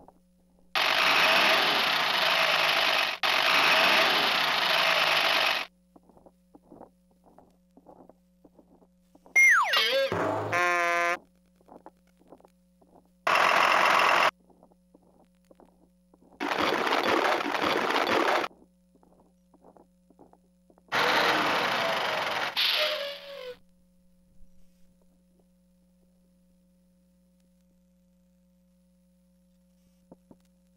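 Electronic sound effects from a Bright Starts Having A Ball Swirl and Roll Truck toy's speaker, in five separate bursts of a few seconds each: mostly hissy noise, with a falling whistle glide into a warbling pattern about nine seconds in.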